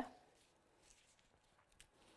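Near silence: faint handling of card and paper on a tabletop, with a light tick near the end.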